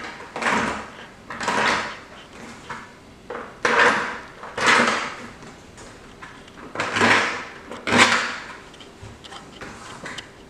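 Knife blade scraping along the inside rim of a plastic bucket in six short strokes, coming in three pairs, to smooth off rough, overlapping edges so a seal will fit.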